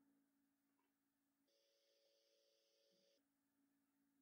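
Near silence, with only an extremely faint steady hum.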